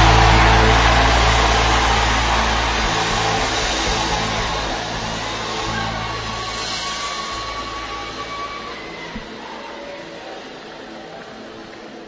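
Added cinematic sound effect: the tail of a boom that carries on as a noisy drone over sustained low tones, fading steadily away.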